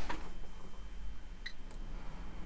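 Quiet room tone with a steady low hum, and two faint clicks close together about a second and a half in.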